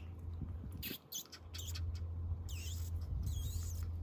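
Pomeranian puppy making high-pitched squeaky whines: a few short squeaks about halfway, then curved squeaky calls in the second half, over a steady low hum.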